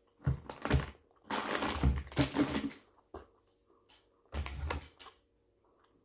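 Candy packaging being handled: crinkly plastic rustling and small knocks in four short bursts, the longest between about one and three seconds in.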